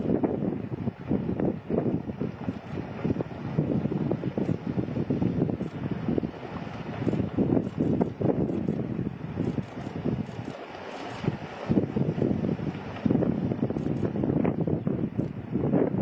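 Wind buffeting the microphone in a low, gusty rumble that eases off briefly about ten seconds in and picks up again a couple of seconds later.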